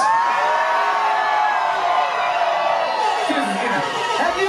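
Bar crowd cheering: voices shout together in one long held yell for about three seconds, then break up into scattered shouting near the end.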